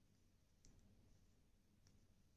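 Near silence, with a few faint clicks of knitting needles touching as stitches are knitted.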